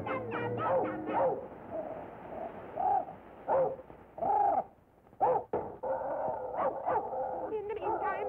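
Cartoon dog barking, several short barks in the middle, over the film's music; the sound drops out briefly just before the last bark.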